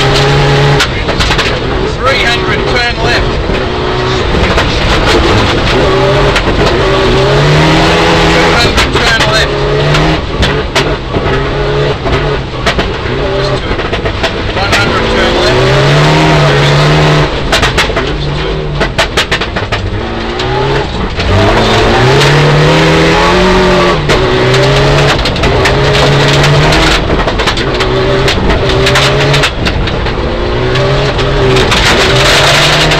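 Mitsubishi Lancer Evolution IX rally car's turbocharged 2.0-litre four-cylinder engine heard from inside the cabin, driven hard on a gravel stage. The engine note repeatedly climbs as it revs, then drops back at each gear change or lift off the throttle.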